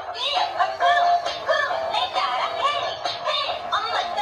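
Dancing cactus toy singing its song through its small built-in speaker: a high, electronic-sounding singing voice in quick, bouncing syllables, thin with little bass.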